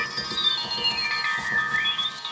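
Music with high, pitched tones that glide slowly downward and then climb again near the end.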